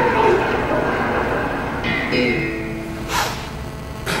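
Soundtrack of a promotional video played over a hall's speakers: a voice in the first second or so, then a short steady tone about two seconds in and a brief whoosh just after three seconds.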